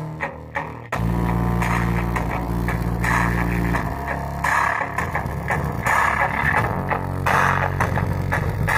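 Bass-heavy music with a guitar and bass line played through a homemade 12 V single-transistor (D1047) amplifier into a subwoofer. About a second in the music jumps louder and a deep bass line comes in.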